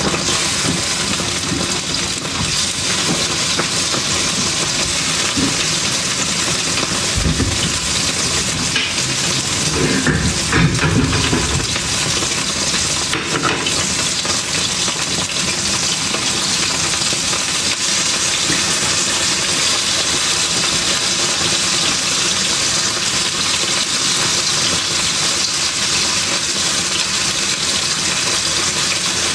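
Meat frying in hot oil in a wok: a loud, steady sizzle and spatter. The meat went in still wet, so the water in it makes the oil spit.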